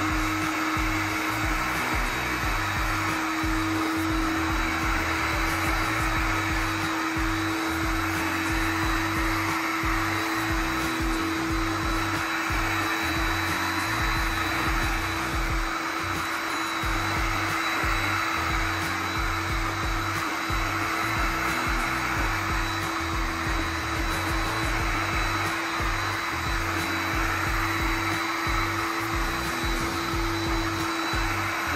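Shark HydroVac wet-dry vacuum and floor washer running steadily on a tiled floor, its motor giving a steady hum with an even hiss from the suction and spinning brush roller.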